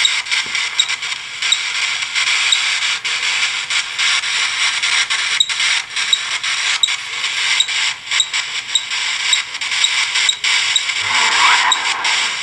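Steady hiss of radio-like static broken by rapid, irregular clicks and crackles, played through a phone's speaker from a ghost-box (spirit box) app that is sweeping for spirit voices.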